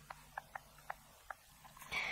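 A few faint, short clicks, about five spread over two seconds, with near quiet between them.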